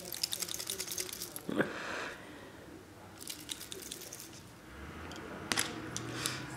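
Quiet handling noise: scattered light clicks and ticks, with a brief soft rustle about a second and a half in and a sharper click near the end.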